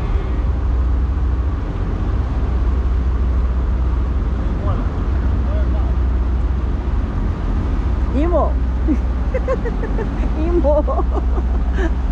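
A steady low rumble of ship engines, with people talking over it in the second half.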